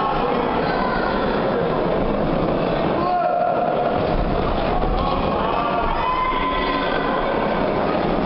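Steady din of a boxing crowd in a hall, with spectators' shouts and calls rising out of it now and then.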